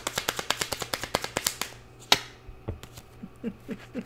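Tarot cards being shuffled by hand: a quick, even run of small card clicks, about seven a second, that stops a little under two seconds in, followed by one sharper card snap.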